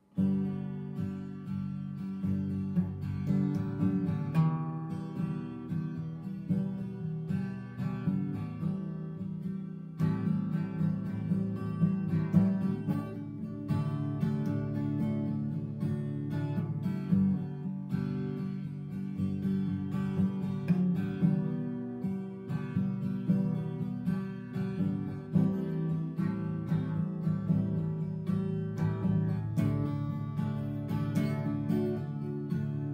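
Solo acoustic guitar strummed, playing chords at a steady level; it starts suddenly from silence.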